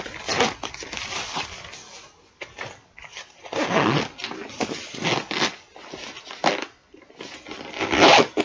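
Zipper of a soft insulated fabric lunch box being pulled shut, with the fabric rustling and scraping in irregular bursts as the box is handled.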